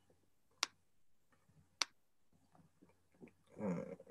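Two sharp computer mouse clicks about a second apart.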